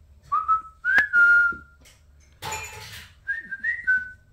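A person whistling in short, pure notes that slide upward, with a sharp click about a second in. A brief rustle comes between the whistles, and two more rising notes follow near the end.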